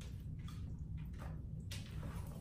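Faint wet squishes and a few soft crackles of sauce-coated fried chicken being picked up from a tray and brought to the mouth, over a steady low hum.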